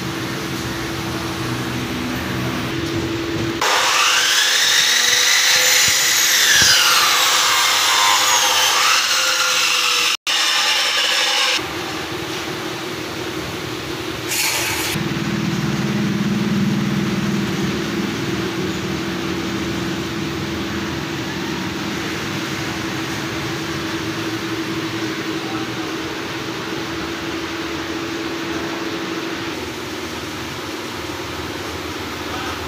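A power tool runs for about eight seconds, its whine rising and falling in pitch, over a steady background hum.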